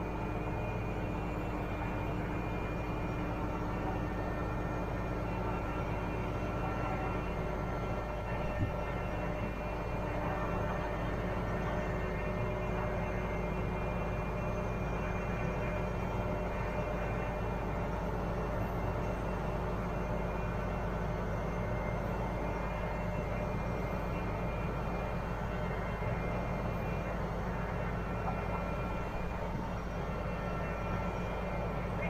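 Liebherr LTM 1230-5.1 mobile crane's diesel engine running steadily while the crane hoists its counterweight, with one short knock a little before nine seconds in.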